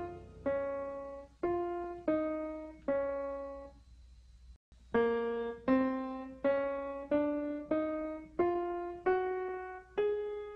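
Background music: a slow piano melody of single struck notes, each fading before the next. There is a short pause and a brief cut-out of the sound about four and a half seconds in.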